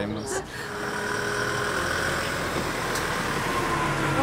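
A motor vehicle's engine running steadily, fading up just after the start, with a faint high whine over the rumble.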